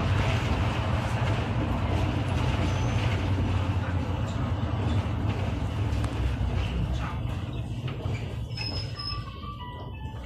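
Interior of a SOR NB 18 CITY bus on the move: steady engine and road rumble that dies away over the last few seconds as the bus slows.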